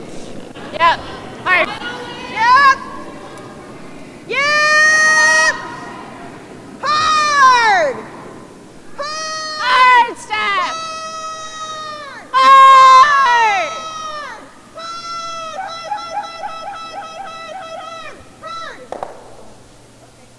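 Curlers shouting a series of long, high-pitched sweeping calls to the sweepers as a stone travels down the ice, several of them falling in pitch at the end. Brooms brush the ice steadily underneath.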